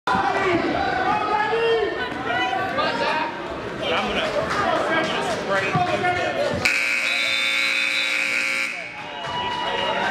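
Overlapping voices of spectators and coaches in a gymnasium, then a match timer buzzer sounds one steady tone for about two seconds, starting about seven seconds in and cutting off abruptly.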